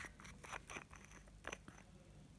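Faint clicks and small scrapes of nail polish bottles being handled and uncapped, the plastic cap turning against the glass bottle, a handful of short ticks spread over the two seconds.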